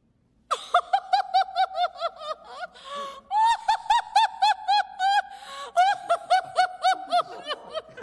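A woman's high-pitched laughter, starting about half a second in: three long runs of quick 'ha' bursts, about five or six a second, with short gasping breaths between them. It is an amused reaction to a cheeky joke.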